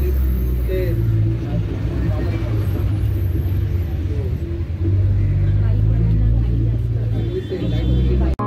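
City bus engine and road noise heard from inside the passenger cabin, a steady low drone that swells louder about five seconds in, with passengers talking indistinctly in the background.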